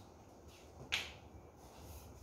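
Packing tape being torn from its roll while sealing a cardboard box: one short, sharp rip about a second in.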